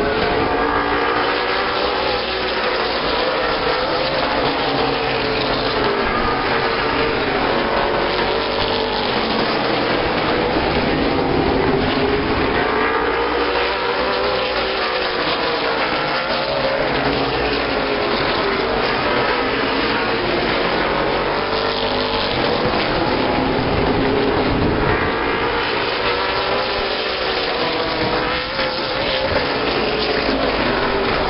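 A field of late model stock cars racing on a short oval, their V8 engines running at full throttle. The engine pitch rises and falls in repeated sweeps as the pack comes around and passes.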